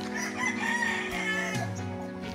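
A rooster crowing once, a wavering high call lasting about a second and a half, over steady background music.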